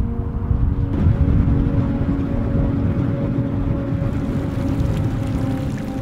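Background music: sustained held chords over a steady low rumble.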